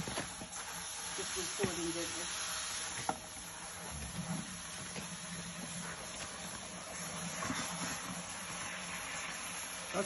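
Water from a garden hose running steadily into a plastic bucket, a continuous hiss, with a few light knocks in the first few seconds.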